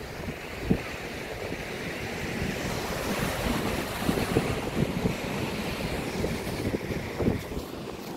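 Sea surf washing and breaking over rocks below a cliff, a steady hiss that swells a little toward the middle. Wind buffets the microphone in low, irregular gusts throughout.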